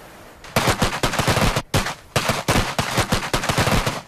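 Handgun fire from several shooters on a firing line, many shots a second overlapping in ragged volleys. It starts about half a second in, with a brief pause near the middle.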